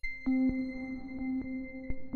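Soft electronic background music: a few steady held tones with light, scattered clicks.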